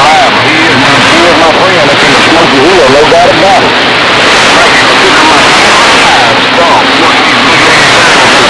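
CB radio receiver on channel 28 bringing in a distant skip station: an unintelligible, warbling voice buried in loud, steady static.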